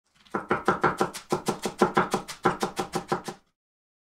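A kitchen knife chopping rapidly on a cutting board, about six strokes a second in three short runs, stopping suddenly near the end.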